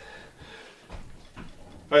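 A man's faint, heavy breathing with a couple of soft knocks, before he starts to speak at the very end.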